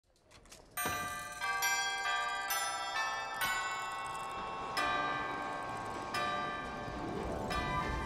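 Bells chiming a slow series of notes, each struck note ringing on and overlapping the next, beginning abruptly about a second in.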